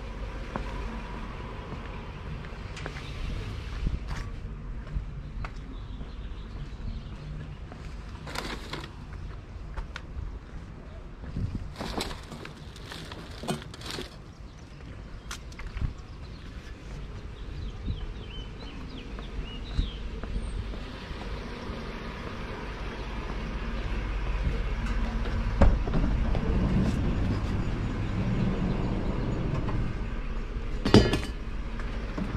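Street ambience with a steady low rumble, broken by scattered short knocks and clatters as curbside junk is handled; the rumble grows louder in the second half.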